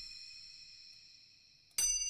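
Bell-like metallic tone from UVI Falcon's granular sampler. A note rings and fades away, then a second note is struck near the end and rings on.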